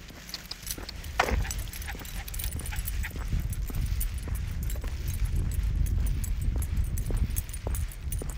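A dog being walked on a leash along a concrete sidewalk: many small irregular clicks and jingles from its tags, claws and the walker's footsteps, over a low rumble that grows from about a second in.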